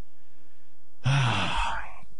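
A man sighs once about a second in: a breathy exhale with a little voice at its start.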